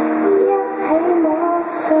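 A woman singing live, accompanying herself on a strummed acoustic guitar.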